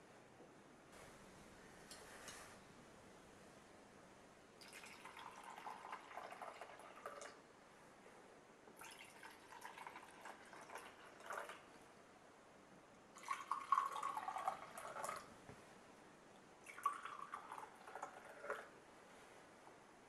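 Liquid poured from a ceramic teapot into enamel mugs, four separate pours of about two to three seconds each with short pauses between, one for each mug.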